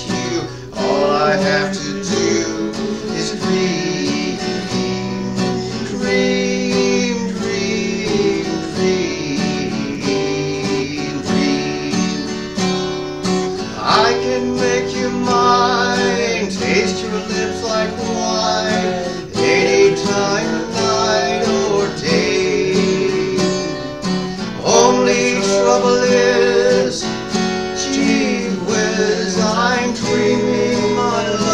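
Steel-string acoustic guitar strummed steadily, accompanying a man singing a slow country ballad.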